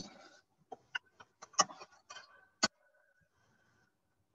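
A handful of short, sharp clicks and knocks at irregular intervals from a mould clamped against the nozzle of a small plastic injection-moulding machine while plastic is pushed in, followed by a faint steady whine.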